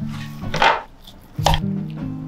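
Knife cutting into a raw rack of lamb on a wooden cutting board: two sharp cuts about a second apart, over background music.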